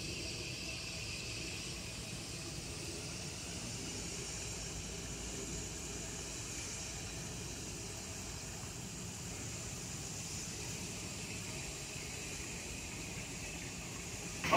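Steady outdoor background noise: a low rumble with a hiss above it, unchanging throughout.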